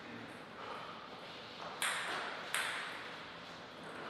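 A plastic table tennis ball bouncing on a hard surface, two sharp pings about three quarters of a second apart near the middle, each with a short ringing tail.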